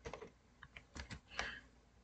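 Faint computer keyboard keystrokes: several short, irregular clicks as query text is entered.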